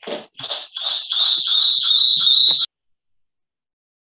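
Rhythmic pulses of noise, about three a second, with a steady high whine running under them, coming over a participant's open microphone on a video call. It cuts off abruptly after about two and a half seconds.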